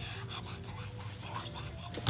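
A woman whispering, acting out the voices that whispered her name in her ear as a child.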